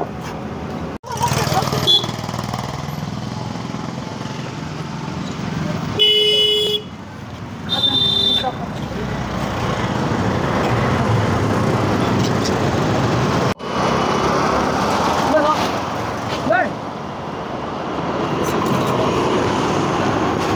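Outdoor traffic noise with a vehicle horn sounding twice: a short toot about six seconds in and another about two seconds later. Faint voices in the background.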